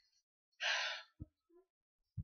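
A person's short breath, a half-second sigh or intake of air, followed by a faint tick.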